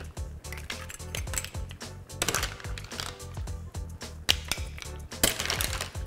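Cooked mussels being spooned from a pan onto a plate: a run of irregular light clicks and clinks of shells and a metal spoon against the pan and plate, the sharpest about four seconds in.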